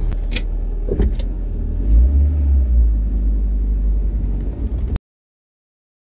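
Van engine being started from inside the cab: keys jangle and click, then the engine turns over and catches about two seconds in and runs at a steady low idle. The sound stops abruptly about five seconds in.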